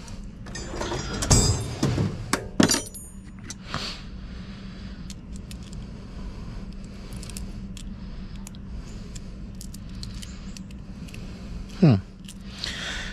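Steel hand tools clinking: combination wrenches knocking against each other and the tool chest drawer, with a sharp metallic ring about two and a half seconds in. Then lighter clicks as a socket is fitted onto a ratchet.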